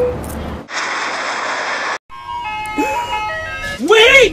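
A loud, even hiss for over a second cuts off abruptly, then an ice cream truck's jingle plays, a tinkling melody of steady tones. A voice calls out over it near the end.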